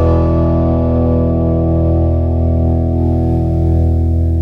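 A country band's final chord held and ringing out, guitars and bass sustaining one steady chord with no new notes while its bright top slowly dies away.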